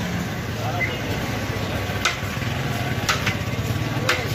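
Busy street-stall ambience: indistinct background voices over a steady traffic hum, with a few sharp knocks or clinks, about two seconds in and again a second later.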